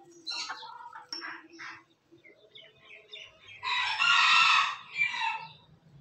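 Millefleur booted bantam chickens clucking, then a loud crow about four seconds in, ending with a shorter final note.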